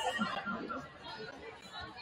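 Indistinct chatter and calls from several voices, players and spectators, in a gymnasium.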